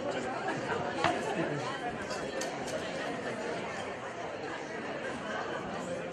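Crowd chatter in a large hall: many people talking at once in a steady babble, with one sharp click about a second in.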